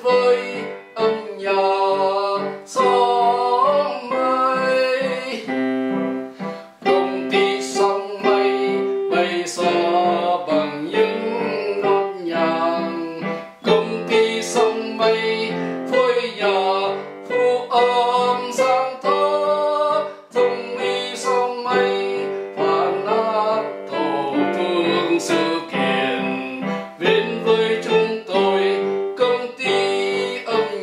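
Electronic keyboard playing a simple, slow song: chords under a melody line, the notes changing about once or twice a second.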